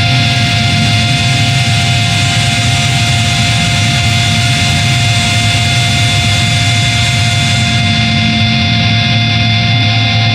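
A loud, sustained wall of distorted, effects-laden electric guitar drone with several held tones and no beat. The highest hiss thins out near the end.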